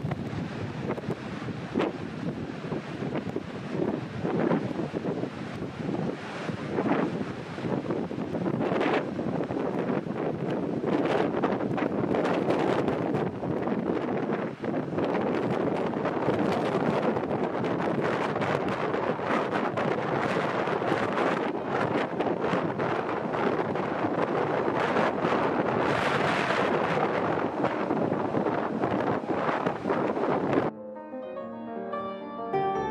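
Steady roar of a large waterfall, with gusts of wind buffeting the microphone.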